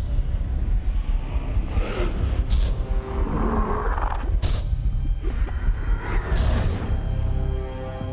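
Suspense horror film score with a heavy, deep rumble, cut by three sharp whooshes about two seconds apart, settling into held tense chords near the end.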